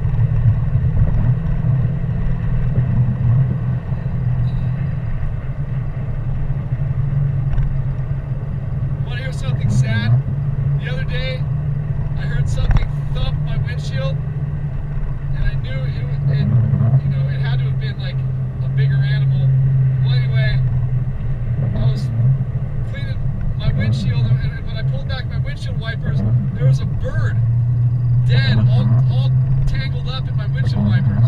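Car driving on a wet highway, heard from inside the cabin: a steady low drone of engine and tyres. A voice comes and goes faintly over it from about ten seconds in.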